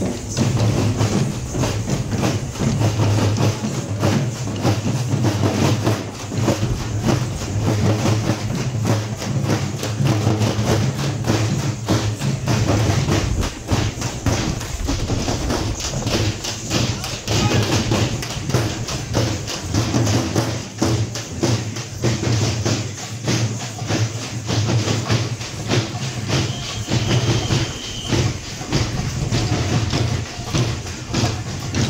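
A group of frame drums beaten with sticks in a fast, steady, continuous rhythm, with crowd voices underneath.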